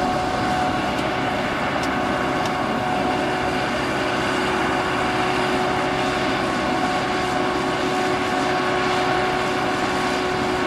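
Steady machine hum of running aircraft machinery, a constant whine over a noise bed that does not change.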